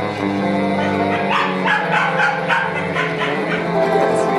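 Live gypsy jazz from acoustic guitars and double bass, with held low notes under a run of short, sharp notes in the middle.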